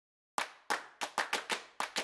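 A rhythmic run of sharp handclaps, about nine of them, starting about a third of a second in at roughly three to four a second.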